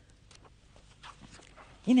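Faint rustles and ticks of book pages being leafed through, then near the end a woman's voice saying "here it is" in a long, falling tone.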